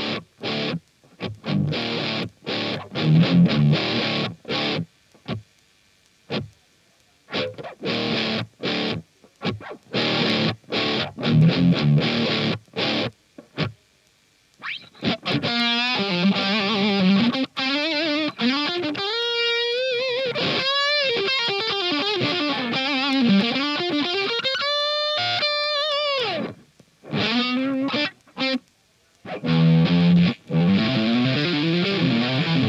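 Les Paul-style electric guitar played through an overdriven Laney Cub valve amp head: short, choppy chord stabs with brief silences between them for about the first half. After a short pause it switches to a single-note lead with string bends and vibrato, ending on a long bent note before a few more chord hits near the end.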